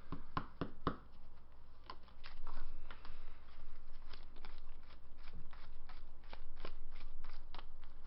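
Sleeved trading cards being handled and shuffled by hand: a run of irregular light clicks and snaps.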